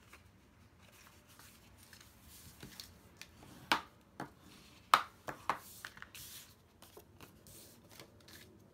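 Cardstock being folded on a score line and creased with a bone folder: soft paper rustling and rubbing with a few sharp clicks and taps, the loudest about five seconds in.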